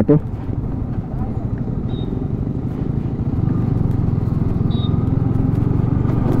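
Yamaha R15 V3's single-cylinder engine running at low speed under the rider, heard from the handlebar with road and wind noise; it grows gradually louder from about three seconds in.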